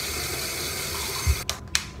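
Steady rush of running tap water that cuts off suddenly about a second and a half in, with a low thump just before. Then two sharp cracks, knuckles being cracked.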